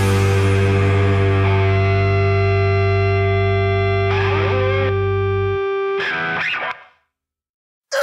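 The end of a hardcore punk song: a held, distorted electric guitar chord rings out. The low end cuts off about five and a half seconds in, a few scraping string noises follow, then about a second of silence. The next song starts loudly at the very end.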